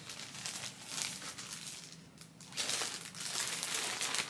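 Crinkling and rustling of clothes being handled, dipping quieter about two seconds in and picking up again after.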